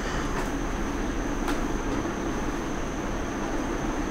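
Steady mechanical room background: a continuous even hum and hiss with a thin high whine, no changes or separate events.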